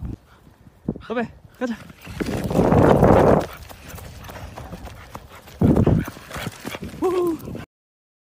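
Bursts of wind buffeting the microphone, loudest about two to three seconds in and again near six seconds, with short snatches of a woman's voice. The sound cuts off abruptly near the end.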